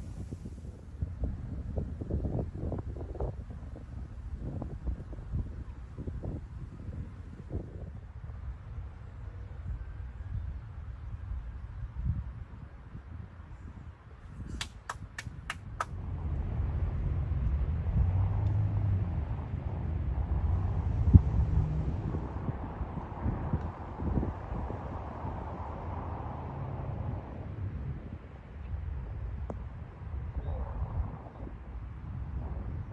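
Wind buffeting the microphone, an uneven low rumble, with a quick run of about five sharp clicks about halfway through. After the clicks the background becomes louder and fuller.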